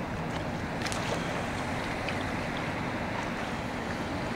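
Steady open-water ambience: a wash of water with wind buffeting the microphone, plus a few faint clicks about a second in.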